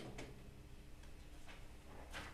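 A few faint, irregular clicks and taps in a quiet small room, one near the start and another about a second and a half in.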